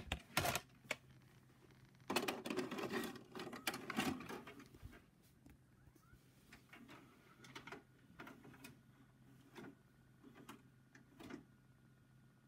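VHS cassette being loaded into a VCR: a few handling clicks, then a stretch of mechanical rattling and whirring about two seconds in as the deck takes the tape, followed by sparse faint clicks as it threads and starts to play. A low steady hum runs underneath.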